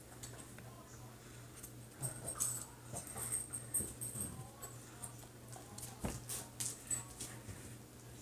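Light, scattered clicks and taps from a small plastic tool picking clay fruit slices out of slime, the sharpest just after the middle, with a dog whimpering softly.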